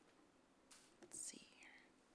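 Near silence: room tone, with a faint murmured voice about a second in.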